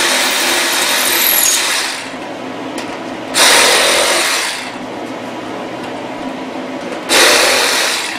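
Milwaukee reciprocating saw running in three bursts, the first about two and a half seconds long and the next two about a second each, cutting a wooden CNC-routed lid free through the uncut tabs of its blank. A quieter steady hum carries on between the bursts.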